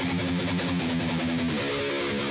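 Electric guitar played through distortion, picking a fast metal riff. Near the end the notes slide up in pitch.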